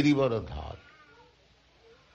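A man's drawn-out voice trailing off in the first moment, then quiet room tone with a few faint short tones.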